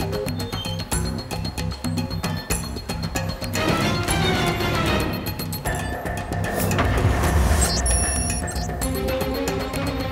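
Background music from a drama score, with a steady pulsing low beat and held tones above it.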